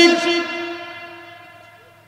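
The tail of a man's long held chanted note over a microphone and loudspeaker system, one steady tone fading out slowly over about two seconds.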